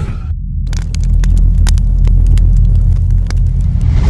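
A loud, deep rumble with dense crackling and clicking over it, after a short whoosh that dies away in the first moment, part of a logo animation's sound design.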